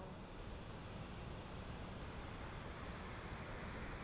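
Steady rushing roar of a large waterfall in full flow, an even noise with no breaks.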